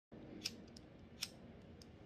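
A handheld lighter being struck to light a rolled smoke: two sharp clicks about three-quarters of a second apart, with a few fainter ticks.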